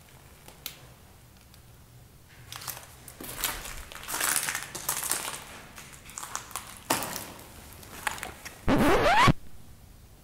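Footsteps crunching and scraping over grit and rubble on a debris-strewn floor, starting a couple of seconds in. Near the end comes a short, loud squeak that rises in pitch.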